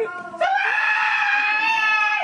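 A man's long, high-pitched yell held on one steady note, starting about half a second in.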